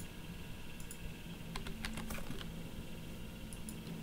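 Computer keyboard and mouse clicks while drafting: a quick run of clicks about halfway through and two more near the end.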